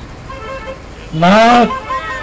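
A man's voice over a handheld microphone: one short, loud shouted phrase about a second and a half in. In the pauses on either side, faint steady tones hang in the background.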